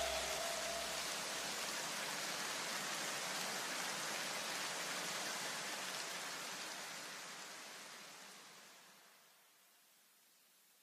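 A steady hiss of noise, the fading tail of the background electronic music, slowly dying away to silence about nine seconds in.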